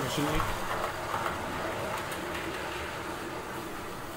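Model train with heavily loaded wagons running along the track out of sight, a steady running noise of wheels on rails that slowly fades as it moves away.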